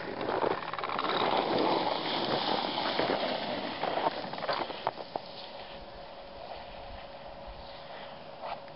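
Cross-country skis scraping and crunching over cold, ungroomed snow as a skier pushes off and glides away, with a few sharp clicks about four to five seconds in. After about five seconds the sound drops to a faint steady hiss.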